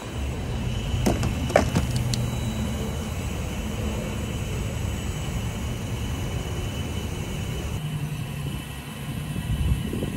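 Gas pump nozzle clicking and knocking into a car's fuel filler neck between about one and two seconds in, then gasoline pumping into the tank with a steady low rushing hum.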